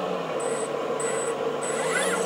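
The two electric-motor-driven hydraulic pumps of a 1/10 scale RC D11 bulldozer running together, a steady hum with a high whine that cuts in and out several times. Both pumps are building about 5 MPa of oil pressure.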